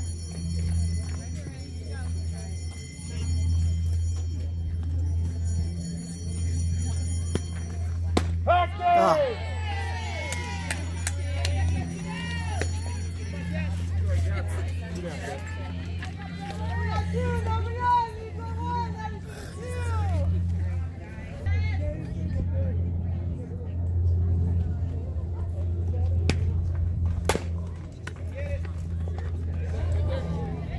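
Voices calling out and chanting in rising and falling tones over a steady low rumble. Near the end comes one sharp crack: a softball bat hitting the ball.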